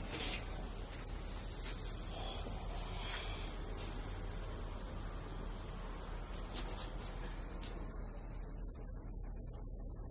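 Steady, shrill insect chorus, a continuous high-pitched buzzing that changes slightly about eight and a half seconds in, with a few faint handling knocks.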